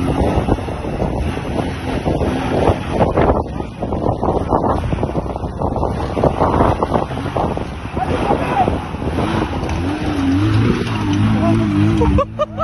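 A 4x4 SUV's engine revving under heavy load as it claws up a steep dirt bank, with a dense crackle of spinning tyres and flung dirt and stones over it. In the last few seconds the engine note comes through more clearly, wavering up and down.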